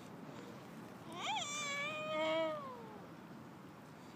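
One long, drawn-out cry, about two seconds: a quick rise and fall in pitch, then a held note that slides down at the end.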